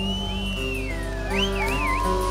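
Live rock band playing the song's closing bars, a held chord under high gliding, wavering tones.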